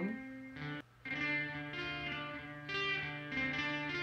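Electric guitar notes sustaining through a Behringer DR600 digital reverb pedal, as the pedal's mode is switched to its room setting. The sound drops out briefly just under a second in, then the notes ring on.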